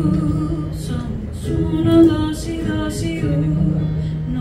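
Live acoustic song: sustained sung notes over a strummed ukulele and acoustic guitar.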